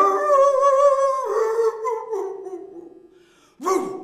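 A woman's voice holding one long, wavering note through rounded lips, stepping down in pitch after about a second and fading away; more voice comes back near the end.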